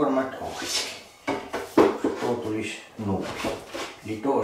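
A man's voice talking under his breath in broken phrases, with knocks and rubbing from a length of wooden skirting board handled and slid along a table.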